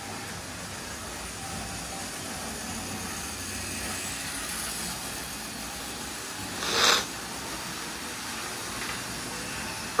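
Model trains running on the layout: a steady hum of small electric motors and wheels on the track. A short hissing burst comes about seven seconds in.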